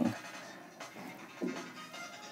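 Soft background music with faint scratching of a stylus on a pen-display tablet screen.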